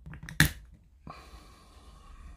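A few small clicks, then one sharp click about half a second in and a softer one about a second in, as the plastic housing and LED board of a disassembled GU10 LED lamp are handled.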